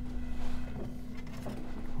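Faint handling noise of vinyl 45 rpm records being lifted and shuffled in a stereo console drawer, over a steady low hum.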